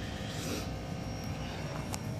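Steady mechanical hum of running air-conditioning equipment, with a single sharp click near the end.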